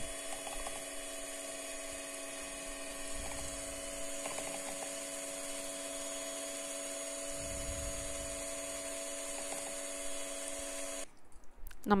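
Electric hand mixer running at one steady pitch, its twin beaters whisking cake batter in a steel bowl; the motor switches off about a second before the end.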